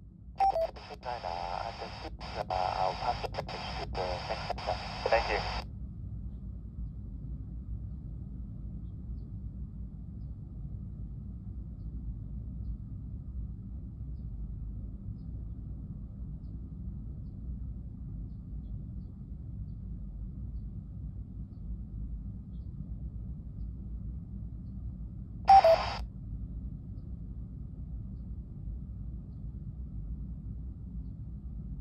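An air-traffic-control radio voice transmission, unintelligible and band-limited, heard through a Yaesu FT-60 handheld's speaker for about five seconds near the start. After that only a low steady hum remains, broken by one short half-second radio blip about 25 seconds in.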